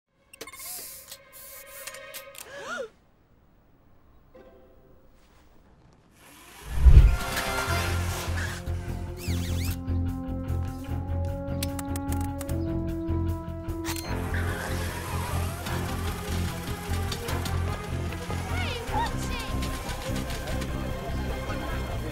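Film soundtrack: after a few scattered sounds and a quiet stretch, the music score comes in with a heavy low hit about seven seconds in and then plays on loudly with long held notes.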